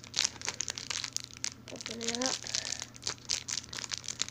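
Crinkly plastic of a small toy blind bag being crumpled and tugged in the hands while it resists opening, with many quick crackles. A short hummed vocal sound comes about two seconds in.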